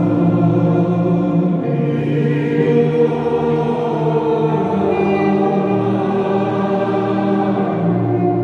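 A congregation singing a slow hymn together, many voices holding long notes that change every second or two.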